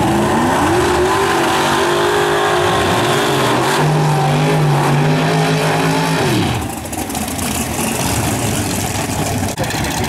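Dodge Dart drag car's engine revving up and held at high revs through a burnout, the pitch stepping lower about halfway through. About six and a half seconds in the revs drop sharply off, and the engine runs on rough and low.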